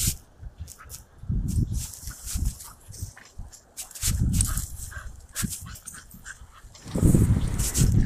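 A dog moving and sniffing through dry grass and brush, with crackling and rustling of dry stalks. Several low rumbling swells of wind or handling on the microphone come in between, the longest near the end.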